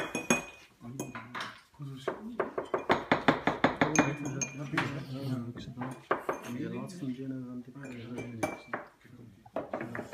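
Metal cupping spoons clinking against ceramic coffee cups in many quick, sharp chinks, a few ringing briefly, over background voices.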